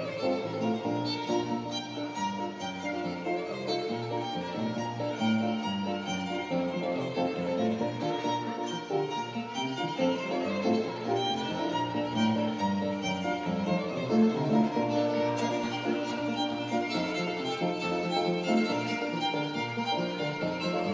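Live instrumental music played without pause: a melody line over piano accompaniment.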